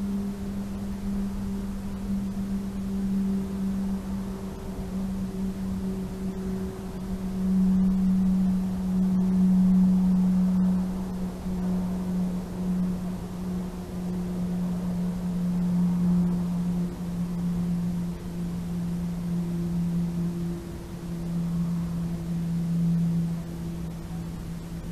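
A distant motor drone: one steady low tone with a single overtone, its pitch sinking slowly and its loudness swelling and fading.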